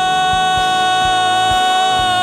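A man's long, held shout of "Juyeo!" ("O Lord!") into a microphone on one steady, high pitch. It is the cry that opens Korean-style loud unison prayer (tongsung gido). Soft instrumental music with a light beat plays beneath it.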